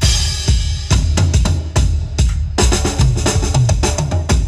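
A Yamaha acoustic drum kit played in a driving groove, heard through the Yamaha EAD10 drum mic system. Kick drum and snare hits come several times a second, with cymbal crashes at the start and again about two-thirds of the way through.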